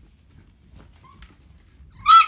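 Puppies wrestling and playing, heard faintly: soft scuffling with one brief, faint squeak a little over a second in.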